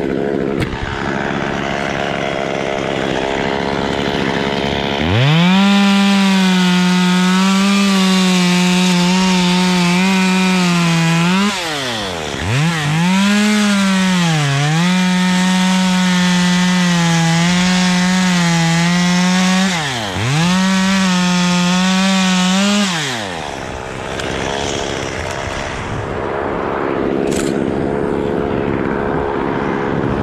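Two-stroke chainsaw running at full throttle as it cuts the frond bases off a date palm trunk. Its pitch drops sharply twice as the chain bogs in the cut, then recovers. The saw idles before and after the cutting.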